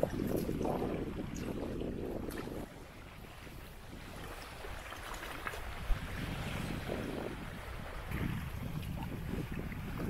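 Wind buffeting the microphone over small waves lapping at a muddy river's edge, louder for the first couple of seconds and then quieter. A single sharp click comes about six seconds in.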